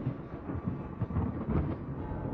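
Deep, irregular rumble of rolling thunder, layered into a dark, brooding music intro.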